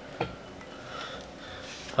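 Faint handling sounds as hands press double-sided tape onto a rusty metal weight plate and take hold of the plate, with a brief sharp sound just after the start.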